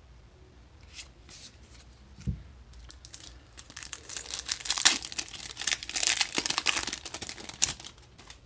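Foil wrapper of a Magic: The Gathering Kaldheim Collector Booster pack being torn open and crinkled, a dense crackling rustle that builds from about three seconds in and is loudest over the second half. A single soft thump comes a little after two seconds.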